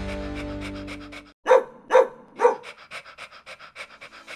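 A dog barking three times, about half a second apart, with quick rhythmic panting running through, as a short jingle's music ends in the first second.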